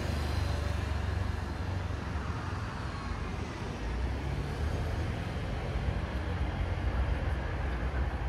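City street traffic: cars and a motor scooter passing on the road, a steady low rumble that swells a little as vehicles go by.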